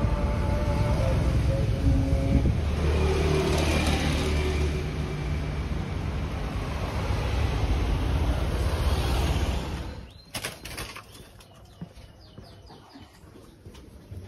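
Steady street traffic noise with a low engine hum for about ten seconds. Then the sound drops suddenly to a quieter spot, where a brief flurry of bird wing flaps and a few short bird chirps are heard.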